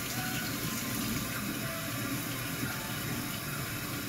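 Kitchen sink faucet running steadily, its stream splashing into the sink and onto wet hair being rinsed under it.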